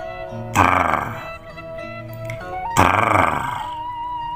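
A man's voice making two short, rough, growling vocal sounds, one about half a second in and one near three seconds in, over background music with steady held tones.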